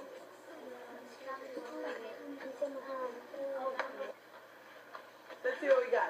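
Indistinct children's voices talking quietly in a classroom, muffled and thin as played back through a computer speaker, with a louder voice near the end.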